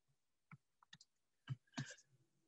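Near silence broken by about five short, faint clicks spread through it.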